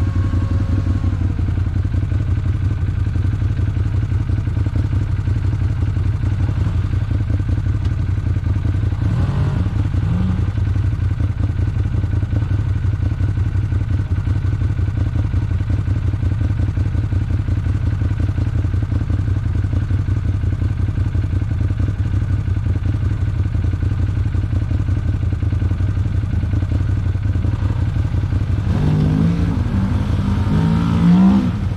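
Side-by-side UTV engine idling with a steady low drone. Near the end a second engine rises and falls in pitch as another UTV drives up.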